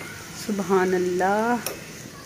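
A woman's wordless, drawn-out exclamation of delight: one sustained voiced sound that rises in pitch at its end, starting about half a second in and lasting about a second. A light click follows just after it.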